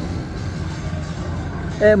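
Outdoor street noise: a steady low rumble of traffic with faint distant voices. A man's voice breaks in with an 'uh' near the end.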